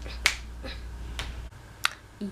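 Finger snaps: three or four sharp snaps at uneven spacing, the first the loudest, over a low hum that stops partway through.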